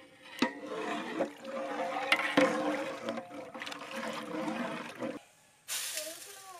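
Boiled-down milk sloshing and swirling as it is stirred in a large pot with a long metal rod, with a few sharp knocks of metal. Near the end a sudden hiss starts as sugar is poured in.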